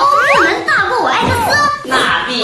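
Speech only: a high-pitched voice with wide pitch swoops, trading taunting lines in Chinese.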